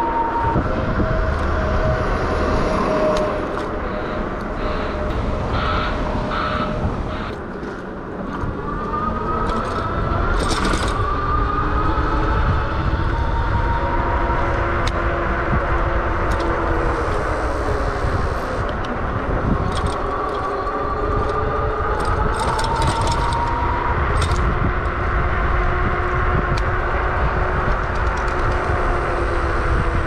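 Electric bike's hub motor whining while riding, its pitch sliding up and down with speed, over wind rumble on the microphone.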